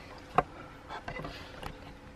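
Handling noise from a camera being picked up and moved: one sharp click about half a second in, then faint rustling and small knocks.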